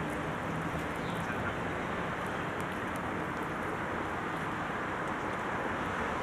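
Steady outdoor background noise, an even hiss, with a few faint short chirps about a second in.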